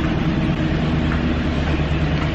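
Steady street traffic noise with a low engine hum under it.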